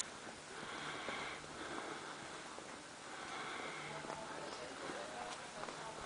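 Quiet outdoor ambience: faint distant voices and soft footsteps on a concrete path.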